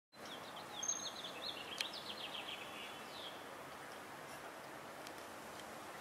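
A small bird chirping a quick run of short, high notes during the first three seconds, over faint steady outdoor background noise.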